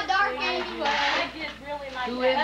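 Mostly speech: voices talking, with a short burst of noise about a second in.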